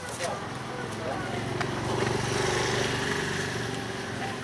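A motor vehicle passing along the street, its engine hum swelling about halfway through and then fading, with people talking around it.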